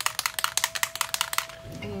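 A fast rattle of sharp clicks, about eight a second, stopping about a second and a half in. A faint steady tone sounds beneath it.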